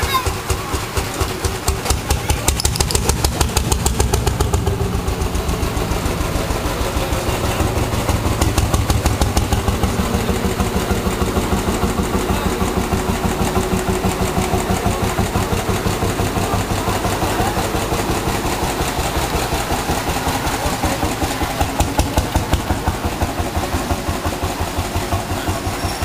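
Vintage tractor engine running with a rapid, steady chugging beat as it drives past, with crowd chatter.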